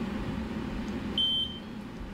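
A single short, high-pitched electronic beep about a second in, typical of the CW-5200 water chiller's alarm, which goes off when the coolant hoses are kinked or obstructed. Under it runs the steady hum of the chiller.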